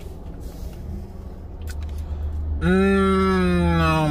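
Low rumble inside a car, then about two-thirds of the way in a man's voice starts a long, loud, drawn-out vocal sound on one note that slowly sinks in pitch.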